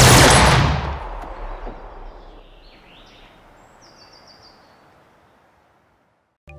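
A sustained burst of automatic assault-rifle fire cuts off under a second in. Its echo then dies away slowly over several seconds into near silence, with a few faint high chirps near the middle.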